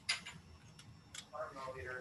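Three light clicks from small objects being handled, the first the sharpest, then a voice starting to speak near the end.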